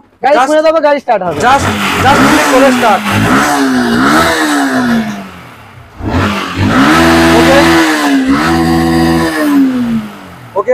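Yamaha R15 motorcycle's single-cylinder engine started and revved in repeated blips, the pitch rising and falling. It drops back for a moment, then is held at high revs twice for about a second each near the end.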